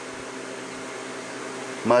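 Steady mechanical hum in a room, holding several steady tones under an even hiss, like a fan or air-conditioning unit running.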